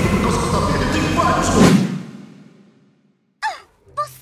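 Loud, dense animated-film soundtrack: dramatic music with a deep rumble and rushing effects, cutting off about two seconds in and fading away, then a short vocal sound near the end.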